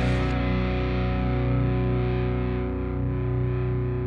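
Music: a single distorted electric guitar chord held and ringing out, fading slowly, with no beat.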